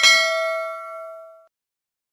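Notification-bell sound effect: a single bright ding whose overtones ring on and fade out after about a second and a half.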